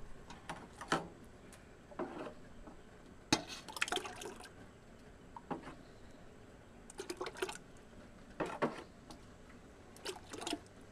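Tomato juice scooped with a metal cup and poured into a strainer bag over a pot: several short spells of splashing and trickling liquid a few seconds apart, with a few light clinks.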